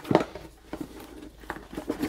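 Cardboard board-game box handled by hand: a few light knocks and scrapes as it is gripped and shifted, the loudest just after the start.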